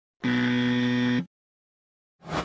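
Electronic buzzer sound effect: one flat, steady buzz about a second long that starts and stops abruptly.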